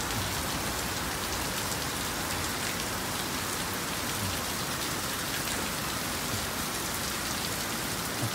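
Heavy rain falling steadily, an even rushing hiss heard from under a covered walkway.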